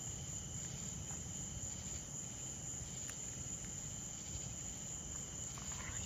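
Crickets chirping in a steady, faint chorus, with one faint click about three seconds in.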